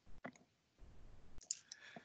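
A very quiet pause with a few faint, sharp clicks, one near the start and one a little past halfway.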